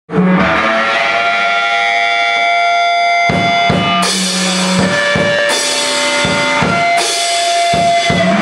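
Live rock band: electric guitar chords held and ringing, with drum kit hits coming in about three seconds in as the chords change every second or two.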